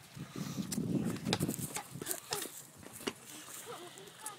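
A child's hands and feet knocking and scuffing on a wooden trailer deck, a run of sharp knocks through the second half. A low, raspy sound lasts about a second and a half near the start.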